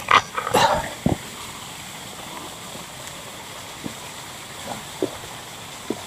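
Steady rush of a small waterfall, with a few short, loud sounds in the first second.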